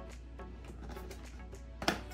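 Background music, with one sharp snap of scissors cutting through a hard clear plastic blister pack near the end.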